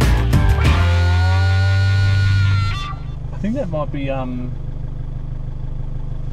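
Rock background music ends on a held chord about three seconds in. Then comes the steady engine and road drone inside a Toyota Hilux cabin on a dirt track, with a brief voice after the music stops.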